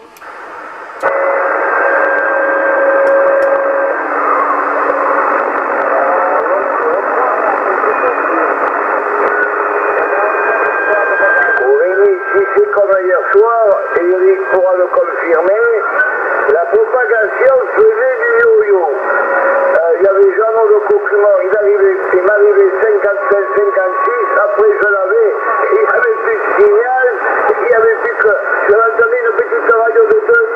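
Yaesu FT-450 transceiver receiving on the CB band in upper sideband: narrow-band static hiss with faint steady whistles comes on about a second in. From about twelve seconds, a distant station's voice comes through in sideband, garbled and unintelligible.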